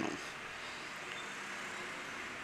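Faint, steady background hiss with no other sound: room tone.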